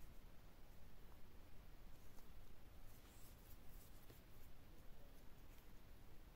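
Very faint rustle and light ticks of a crochet hook working yarn through stitches, over near-silent room tone.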